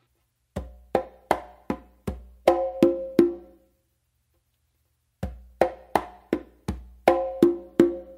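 A conga drum played with bare hands: a tumbao phrase of bass, slaps, finger taps and ringing open tones, played twice with a pause of about a second and a half between.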